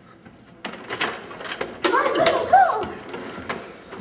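A door being opened: clicks and rattling of its latch and hardware from about half a second in, with a short pitched sound that glides up and down in the middle.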